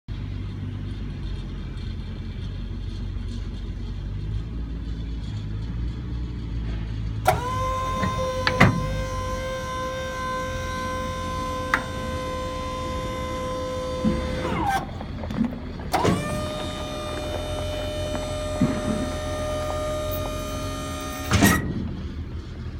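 Electric-hydraulic trailer tongue jack's pump motor running with a steady whine as it lifts the dump trailer's coupler off the hitch ball. It runs about seven seconds and winds down, then runs again for about five seconds at a slightly higher pitch.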